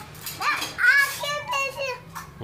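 A young child's high-pitched wordless vocalizing: several short squeals and babbles that rise and fall in pitch.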